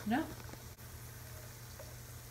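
Faint, steady fizzing of a Beaker Creatures reactor pod dissolving in a glass bowl of water, with a low steady hum underneath.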